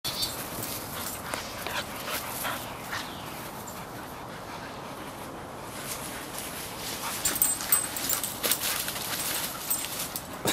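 A pit bull and a husky playing rough: scuffling and rustling through grass and leafy plants, with short dog vocal sounds. The scuffling gets busier near the end.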